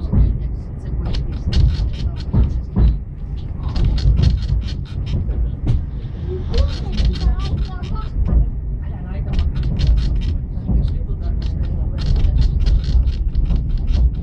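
A train ride heard from inside a passenger carriage hauled by a Finnish Hr1 steam locomotive: a steady low rumble with a fast, regular beat of sharp strokes, about five a second, pausing briefly now and then.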